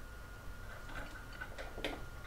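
Faint small ticks of a screwdriver and wrench tightening a steel 1/4-inch machine screw into a coupling nut, a few ticks each second.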